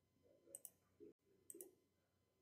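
Near silence broken by two faint double clicks of a computer mouse, about a second apart.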